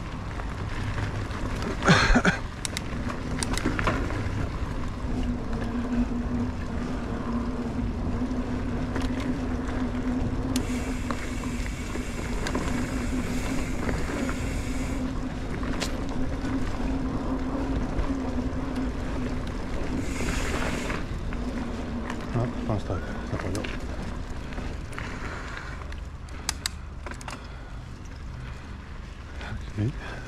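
Mountain bike being ridden along a dirt forest trail: tyre noise and the bike rattling over the ground, with a steady hum through the middle stretch and a few sharper knocks from bumps.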